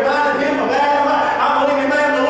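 A man preaching into a microphone, his voice continuous, with several long drawn-out syllables.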